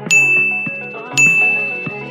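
Two bright, single-pitched ding sound effects about a second apart, each ringing out, over background music.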